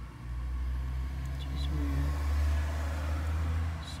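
A low rumble that swells to a peak about two and a half seconds in and eases off near the end.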